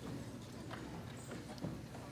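Faint, scattered light knocks and clicks over a low steady room hum, with one slightly louder knock near the end.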